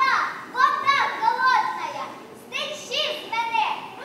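A group of young girls from a children's folk ensemble calling out short phrases together in a chant, without instrumental accompaniment, with a short pause about halfway through.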